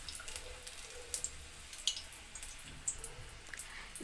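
Samosas deep-frying in hot oil in a steel kadhai: a quiet sizzle with scattered small crackles and pops.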